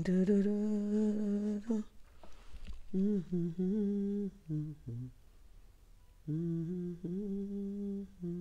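A man humming a slow tune, holding long steady notes in about three phrases with short pauses between.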